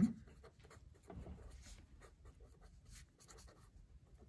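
A pen writing on paper: faint, quick scratching strokes as words are written out.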